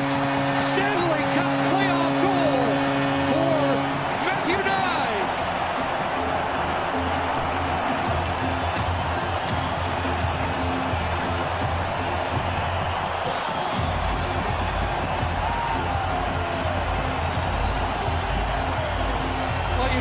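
Hockey arena goal celebration: a goal horn sounds for about the first four seconds over a cheering crowd. The arena goal music then plays with a heavy beat that grows stronger about 14 seconds in, while the crowd keeps cheering.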